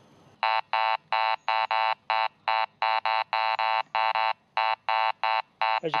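Garrett ACE 200i metal detector giving a low audio tone as short, uneven beeps, about three a second, starting about half a second in, as its coil passes over an iron nail. The broken, inconsistent signal and low tone mark a low-conductivity ferrous target.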